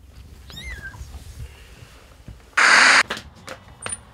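A very young kitten mewing once, a short cry that rises and falls, about half a second in. Past the middle a loud burst of hiss cuts in and stops abruptly under half a second later, the loudest sound here, followed by a few light clicks.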